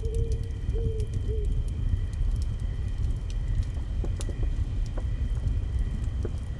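Dark ambient forest soundscape: a low steady rumble under a few held high tones, scattered crackling clicks, and a few short cooing notes in the first second and a half.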